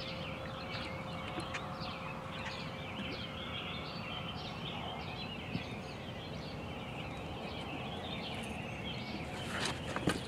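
Many birds calling at once, a dense chatter of short chirps that runs on without a break, over a faint steady hum.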